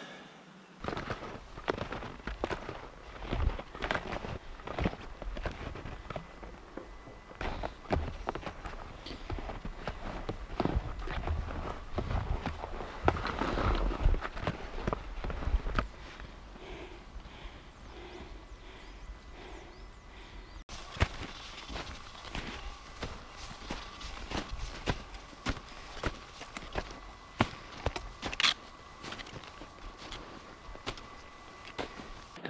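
Ski-touring steps uphill on snow: skis sliding and crunching through snow at an uneven walking pace, with irregular sharp clicks from the gear and pole plants.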